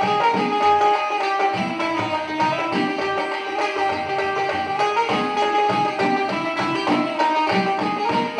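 Sindhi folk instrumental: a benjo (keyed banjo-zither) plays a running melody of plucked, ringing notes over a steady tabla and dholak rhythm.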